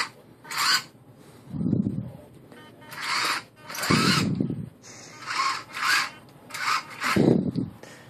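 Rover 5 tracked robot's small DC gear motors whirring in short bursts of about half a second, several times over, as the tracks are driven in brief jogs on carpet.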